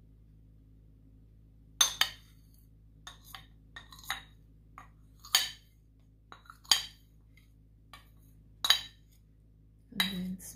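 Kitchenware clinking: about a dozen short, sharp taps at irregular intervals, starting about two seconds in, as a container of condensed milk is tipped out over a ceramic bowl. A low steady hum lies underneath.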